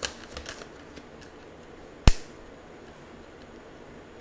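Tarot cards being handled on a table: a few light clicks and taps in the first half second, then one sharp snap about two seconds in.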